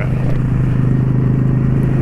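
Cruiser motorcycle's V-twin engine running at a steady cruise, an even low drone, with wind rush on the microphone.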